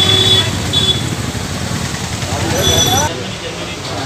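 Busy street noise: people talking indistinctly and traffic passing, with a high steady tone sounding briefly near the start and again before the sound changes abruptly about three seconds in.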